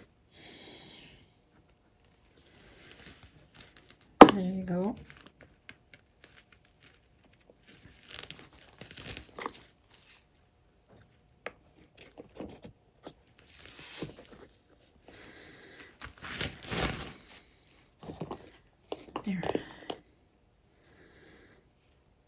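Gloved hands handling small paint-covered wooden ornaments, with intermittent crinkling and rustling and a few light ticks as they are moved and set down.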